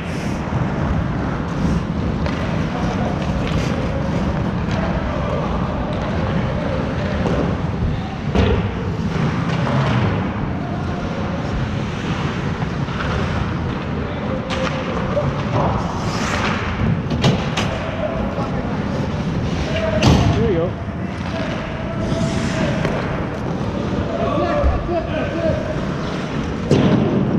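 Ice hockey play in an indoor rink: skate blades scraping the ice, sharp clacks of sticks and puck, and players' voices calling out.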